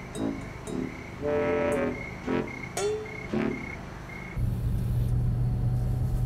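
Background music with a string of short high beeping notes, about two a second. About four seconds in, it cuts to the steady low hum of a car's cabin on the move.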